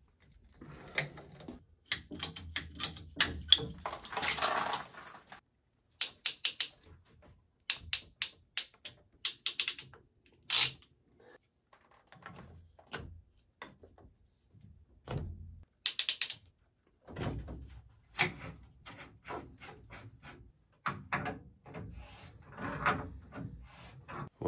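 Tongue-and-groove pliers and brass plumbing fittings clicking, clanking and scraping as the fittings are gripped and tightened. The sound comes in irregular bunches of sharp clicks and knocks with short pauses between, and a brief scrape about four seconds in.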